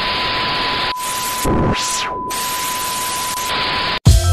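TV static hiss with a steady high test-tone beep over it, the sound of a colour-bars glitch effect. A swooping tone falls and rises again about a second and a half in, and the static and beep cut off suddenly at the end.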